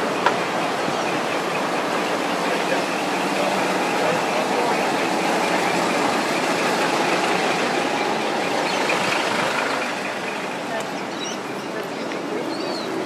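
Outdoor street ambience: a steady vehicle engine running with indistinct voices mixed in, easing somewhat about ten seconds in.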